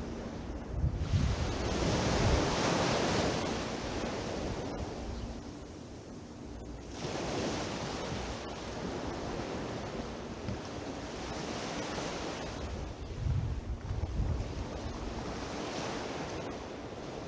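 Small waves breaking and washing up a sandy beach, the surf swelling about a second in and again about seven seconds in, each wash fading over a few seconds. Wind rumbles on the microphone now and then, most near the start and near the end.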